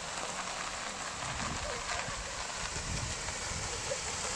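A small sedan rolling slowly up a gravel and grass driveway and pulling up: a steady crackling hiss of tyres on gravel.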